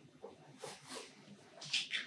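A man's faint breaths and small mouth noises during a pause in speech, with a louder breath near the end.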